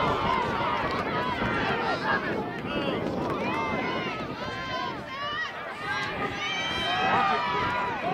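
Several voices shouting and calling over one another during lacrosse play, with no clear words standing out.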